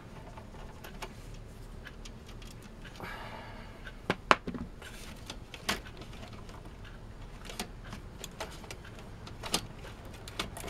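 Scattered metallic clicks and knocks from hands working a steel PC case and its power supply loose, with a brief scrape about three seconds in and the sharpest click a little after four seconds.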